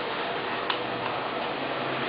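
A sheet of A4 paper being pressed and creased by hand on a desk: a soft handling sound with one sharp click a little after half a second in, over a steady hiss.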